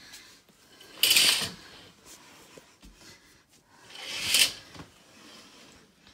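Two short scraping swishes about three seconds apart: a lace curtain being pulled aside and a sliding glass door moved along its track.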